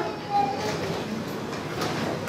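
Steady, even background noise of a large hall picked up through the sound system in a pause between spoken phrases, with a faint brief tone about half a second in.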